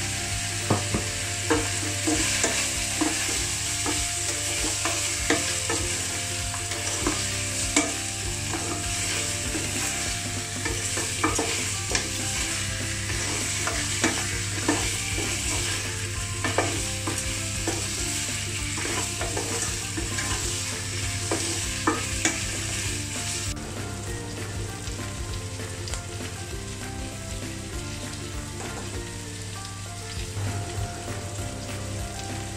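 Chicken pieces and onions frying in a non-stick pan: a steady sizzle, with a wooden spatula scraping and knocking against the pan now and then as the meat is stirred. The hiss thins out about three-quarters of the way through.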